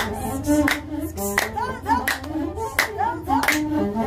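Masenqo, the Ethiopian one-string bowed fiddle, playing a gliding azmari melody with singing, and hand claps keeping time about once or twice a second.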